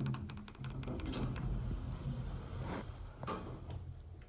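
2004 Otis elevator car starting a trip upward: a thump, then a quick run of clicks from the mechanism over the first second and a half, then a steady low hum as the car rides up, with a couple of single clicks.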